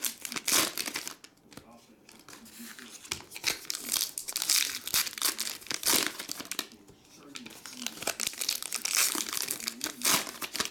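Foil-lined trading card pack wrappers being torn open and crinkled by hand, in repeated irregular bursts of crinkling and tearing.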